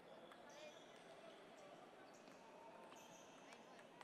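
Table tennis balls clicking faintly and irregularly off paddles and tables, several tables in play at once, over a low murmur of voices, with a few brief high squeaks.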